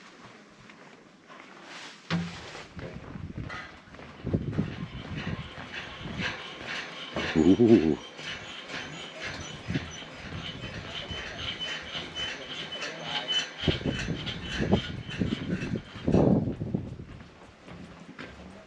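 Indistinct voices of people in the background, with a louder pitched sound about seven seconds in.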